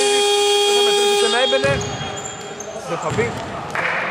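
Basketball scoreboard buzzer sounding a steady, buzzy tone that cuts off about a second and a half in, marking the end of the first half.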